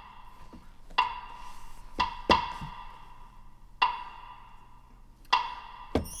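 Soloed wood block (block stick) part from a replayed percussion stem: about six sparse, sharp strikes, each with a short pitched ring, including a quick pair about two seconds in.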